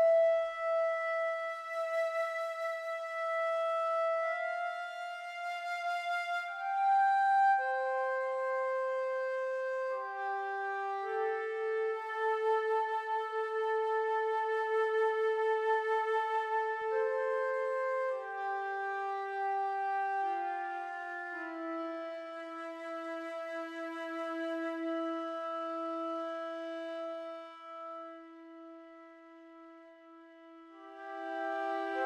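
Sampled orchestral woodwinds, flutes among them, played from a MIDI keyboard as a slow improvised line of long held notes and chords. Their swell and flute vibrato are driven by a face-tracking MIDI expression controller, from the player's head pitch and eyebrows. The sound fades away near the end.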